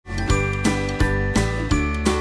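Short intro jingle: a light melody over a bass line, with a new note struck about three times a second.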